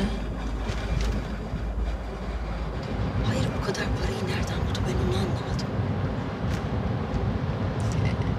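Steady low rumble of a car driving, heard from inside the cabin, with a change in the rumble about three seconds in.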